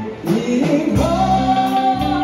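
A man singing into a microphone over music with a steady beat; the voice drops out briefly just after the start, then holds one long note.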